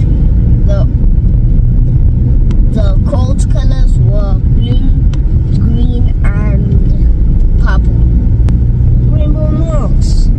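Steady low rumble of a car's engine and tyres, heard from inside the cabin while driving, with a child's voice talking on and off over it.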